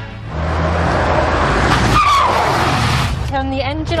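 Car pulling up hard in a skid: about three seconds of loud tyre noise on the road, with a short squeal about halfway through.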